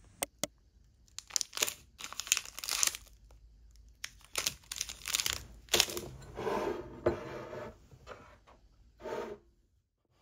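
Plastic food wrapper being crinkled and torn open, in several short bursts.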